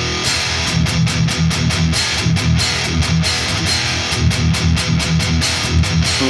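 Distorted electric guitar, an ESP LTD M-1000HT, chugging an open E power chord (E5: open sixth string, second fret of the fifth) with fast, even picking in a steady rhythm.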